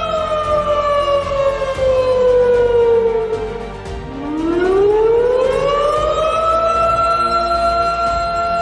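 Wailing emergency siren raised as the fire-evacuation alarm: a steady tone slowly falls in pitch for about four seconds, then climbs again from low and levels off on the same steady tone near the end.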